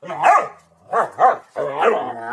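Two Rottweilers, an adult and a younger dog, barking at each other in a squabble: about four loud barks, two close together about a second in and a longer, drawn-out one near the end.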